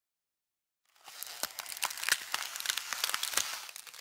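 Crackling, crinkling sound effect of ice or frost forming: a dense run of small sharp clicks that starts about a second in, after silence.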